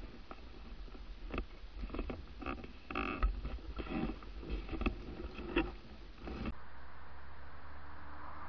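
River water sloshing and splashing close to the microphone in irregular bursts for about six and a half seconds, then a sudden change to a steady hiss with a low hum.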